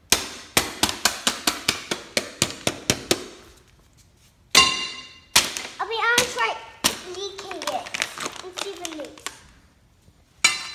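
A rapid run of about fifteen sharp knocks, three to five a second, over about three seconds, from an axe striking a plastic water bottle on a concrete floor. After a pause come a brief high squeal and children's voices.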